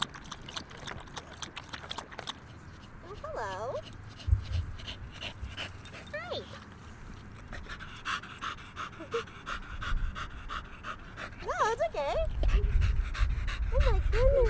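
Dog panting hard in quick, even breaths. A few short, high voice-like sounds come and go, and a low rumble comes in over the last few seconds.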